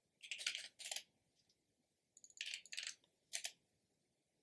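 Typing on a computer keyboard: a quick run of keystrokes, a pause of about a second, a second run, then one last key press near the end.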